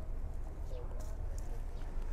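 Quiet outdoor background with a steady low hum, a few faint short bird calls, and light ticks from fig leaves and fruit being handled.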